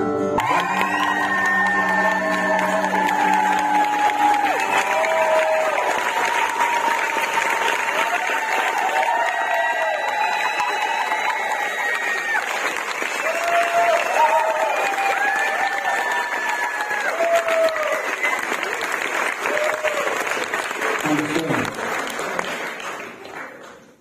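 Audience applauding after a song, with voices calling out over the clapping. The last guitar and keyboard notes ring out under the applause in the first few seconds, and the clapping dies away near the end.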